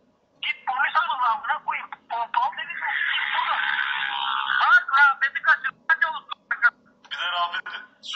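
Voices of a phone call, heard as thin, narrow-band telephone speech. There is a denser stretch of talk about a third of the way in.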